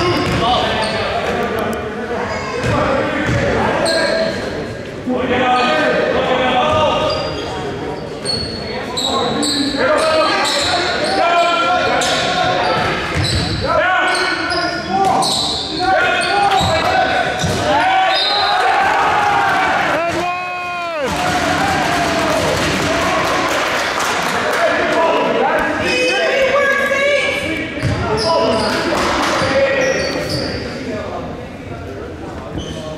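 Basketball game in play in an echoing school gym: the ball bouncing on the hardwood floor, sneakers squeaking, and players and spectators shouting.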